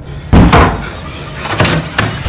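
A bedroom door slamming with a loud bang about a third of a second in, followed by a second, weaker knock about a second later.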